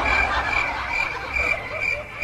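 Chirping night-chorus sound effect with frog-like calls: a high note pulsing about three times a second over a steady hiss. It is used as a comic 'awkward silence' cue.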